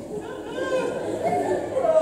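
Voices in a large hall: speech and chatter that grow louder toward the end.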